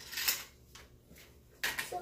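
Light clicks and rattles of small plastic toy pieces being handled, mostly in a short clatter near the start, with quiet handling after.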